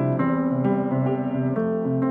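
Upright piano playing: sustained chords with new notes struck every half second or so over a repeating low bass note.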